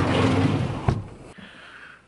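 Pickup truck-bed storage drawer sliding along its runners, then shutting with a sharp knock just under a second in.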